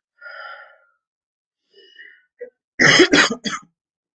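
A man coughing three times in quick succession about three seconds in, after a couple of fainter throat sounds.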